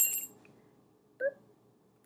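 A light clink of small lab glassware with a brief high ringing right at the start, then a short soft sound about a second later.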